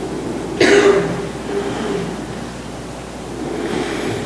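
A single loud cough about half a second in, with a brief voiced tail, over low room noise.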